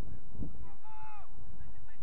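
A single drawn-out shout from a player somewhere on the pitch, rising and falling in pitch for about half a second near the middle, over a steady low rumble.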